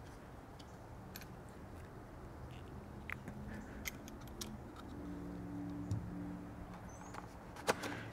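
Faint, scattered light clicks and taps as a fuel injector is pressed by hand into its bore in a CSFI fuel meter body, with a faint low hum that comes and goes.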